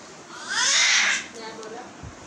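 A young girl's short, high-pitched excited squeal lasting under a second, followed by a brief lower vocal sound.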